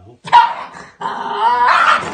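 Cocker spaniel puppy barking at a hand reaching toward the plastic container she is guarding: a resource-guarding outburst. One sharp, loud bark about a third of a second in, then a longer cry with wavering pitch through the second half.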